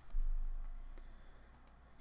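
A few separate clicks from a computer mouse and keyboard during code editing. A low thump comes just after the start and fades over the following second.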